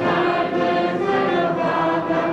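A choir singing a slow melody in sustained notes, with music accompanying it.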